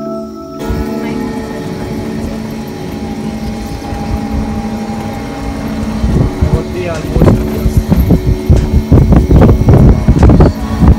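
Open resort buggy moving along a road: a steady hum, with wind buffeting the microphone in irregular gusts that grow heavier from about six seconds in.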